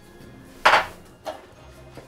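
A metal spoon put down hard on a table, one loud clatter followed by a lighter knock, over soft background music.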